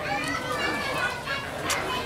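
Background voices of children and other people chattering and calling, faint and overlapping, with no clear nearby speaker.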